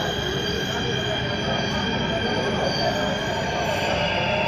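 Delhi Metro train running, heard from inside a car: a steady rumble of wheels on the track with several held high tones over it.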